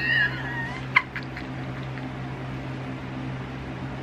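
A woman's brief high-pitched gliding squeal, then a sharp click about a second in, over a steady low hum.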